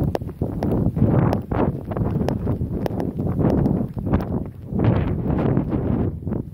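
Someone running with a handheld camera: irregular footfalls on paving, with wind buffeting and handling noise on the microphone.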